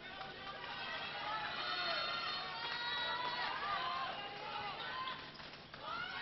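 Sounds of an indoor handball game: shoes squeaking on the court floor as players run, with players calling out.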